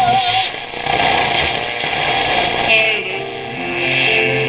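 1938 Airline 62-1100 tube console radio being tuned between stations on the AM broadcast band. A wavering tone drops out about half a second in, giving way to static hiss, and near the end the steady tones of the next station come in.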